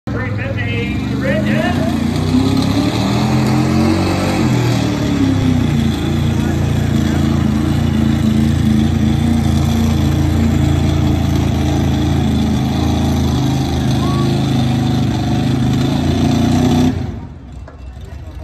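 Pickup truck engine running hard at high revs under heavy load while dragging a weight-transfer pulling sled. It makes a loud, steady drone that cuts off abruptly near the end as the pull finishes.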